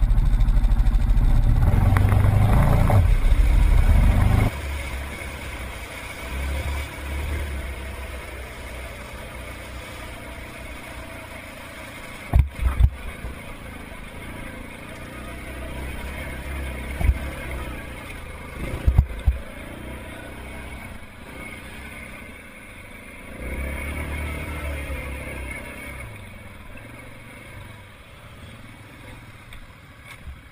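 Yamaha Grizzly 700 ATV's single-cylinder engine running, muffled through a waterproof camera housing; loud for the first few seconds, then quieter and steadier as the quad rides on. A few sharp knocks sound in the middle.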